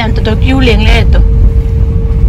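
Hyundai car driving on an unpaved road, heard from inside the cabin: a steady low rumble with a constant hum under it. A voice talks over the first second or so.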